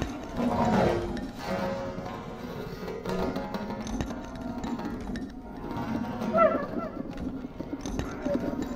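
Free improvisation for bass clarinet and drum kit: the bass clarinet holds low sustained tones while the drummer works the cymbals and kit with scattered strokes. About six and a half seconds in comes a brief, louder, wavering higher figure.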